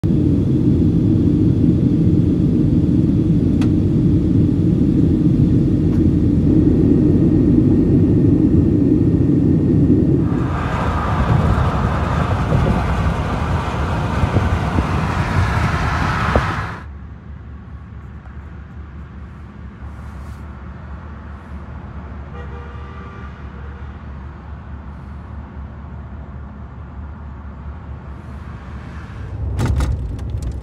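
Steady low rumble of airliner cabin noise in flight for about the first ten seconds. Then a brighter rushing road and wind noise inside a car at highway speed for about six seconds. It cuts off suddenly to a much quieter steady ride noise.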